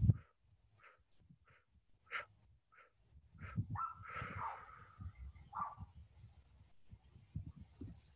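Faint 'bump breathing': a slow exhale pushed out through pinched lips in short, irregular puffs, with a softer drawn-out breath sound a little past the middle. A bird trills briefly near the end.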